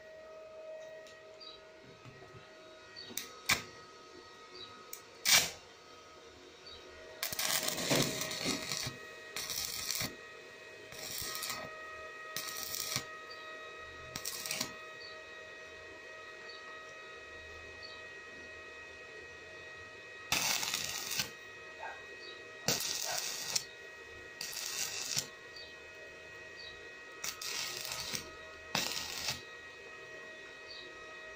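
Stick (shielded metal arc) welding with a 2.5 mm ESAB electrode from a small Vonder inverter on a steel window-regulator arm. The arc crackles in about ten short bursts of half a second to a second each, laying short beads. A few sharp clicks come in the first few seconds, and a faint steady whine runs underneath.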